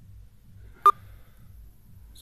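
A single brief, sharp beep just under a second in, the loudest thing here, over a faint low hum.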